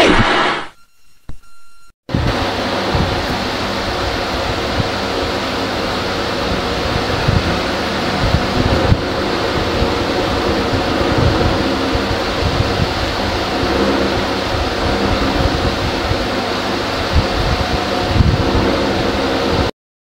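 The sung music ends in the first second. After a short gap, a steady rushing noise with a low rumble starts and runs on evenly, then cuts off suddenly near the end.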